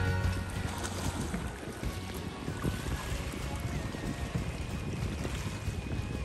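Steady wind noise on the microphone over water moving in a harbour, with small irregular splashes and ticks.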